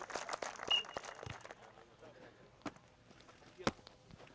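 A few sharp, irregularly spaced slaps of hands striking a volleyball, the strongest just under a second in and near the end, over faint players' voices.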